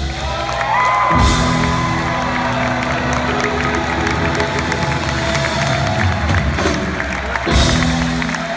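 A live rock band with piano holding a sustained chord from about a second in, while the audience cheers and claps.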